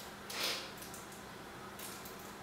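Sesame seeds sprinkled by hand onto strips of puff pastry: a soft, brief hiss about half a second in, and a fainter one near the end.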